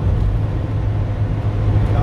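Steady low rumble of engine and road noise inside a moving Ford motorhome's cabin at motorway speed.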